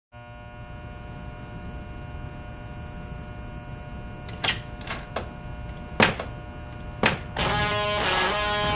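Steady electrical buzz with many evenly spaced overtones, broken by five sharp clicks in the second half. Music comes in shortly before the end.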